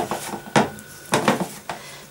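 Fingers rubbing soft margarine into self-raising flour in a plastic mixing bowl, a crumbly scratching with a few sharp knocks against the bowl.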